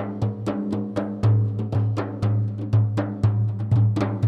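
Frame drums playing a rhythmic instrumental intro to a Sufi ilahi, about four strikes a second with heavier accented beats, over a low steady drone.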